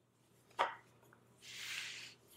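A light knock from a synthetic-wood watch box being handled, then about half a second of soft rubbing near the end as the box is slid and turned on the table under cotton-gloved hands.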